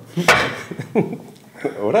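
Men chuckling in short bursts, with a sharp clunk about a quarter second in as glass beer mugs are set down on a glass tabletop.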